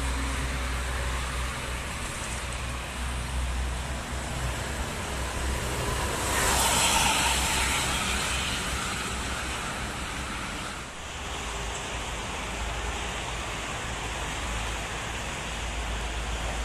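Steady highway traffic noise from trucks, cars and coaches passing on a multi-lane toll road, mostly tyre and road noise. It swells for a couple of seconds as a vehicle passes close, about six seconds in.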